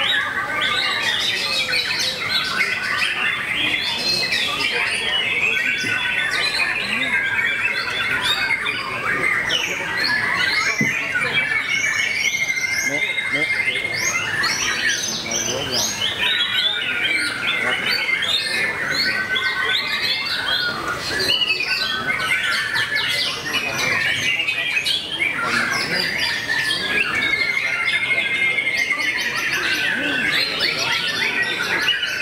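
White-rumped shama (murai batu) singing without a break: a dense, varied run of loud whistles, chirps and fast trills, with a level high trill returning several times, over other songbirds.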